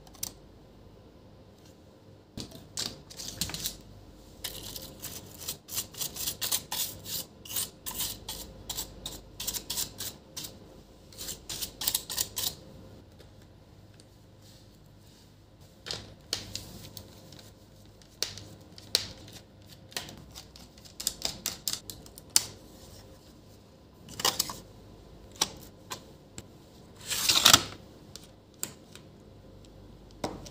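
Small hand tools working on a laptop's plastic case: quick runs of clicks and taps, then scattered ones. Two longer scraping noises come near the end, the second the loudest, as the base panel is worked loose.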